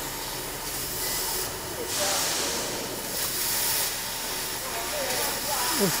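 1 kW fiber laser cutting head cutting sheet steel: a hiss of gas from the cutting nozzle that comes and goes in stretches of a second or two, loudest from about two seconds in.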